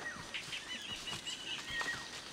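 Jungle ambience: birds calling in thin, high whistled notes, with one wavering trill in the middle, over faint scattered footsteps on the forest floor.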